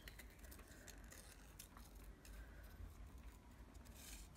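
Faint, scattered snips of small scissors cutting black paper, over a low steady hum.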